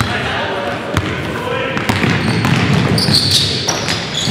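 A basketball bouncing on a hardwood gym floor during play, with a few short high squeaks a little after three seconds in and indistinct voices echoing in the large hall.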